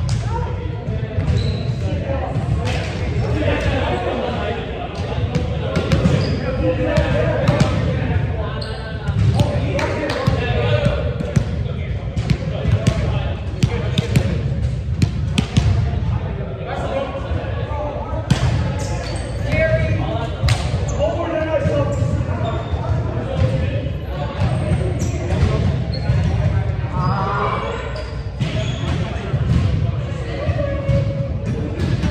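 Volleyballs hitting and bouncing on a hardwood gym floor, with repeated sharp impacts, amid players' voices echoing in a large hall.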